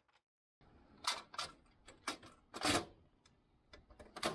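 The stow-assist handle and forward panel of an F/A-18E/F Super Hornet boarding ladder being pushed up into the ladder well: a string of sharp metal clicks and knocks, the loudest about two and a half seconds in, as the spring-loaded handle snaps shut and locks the ladder in its stowed position.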